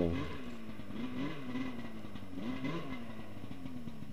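Snowmobile engine running and revving up and down several times, its pitch rising and falling.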